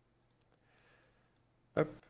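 A few faint computer mouse clicks while settings are selected in a software dialog, with a soft breath between them.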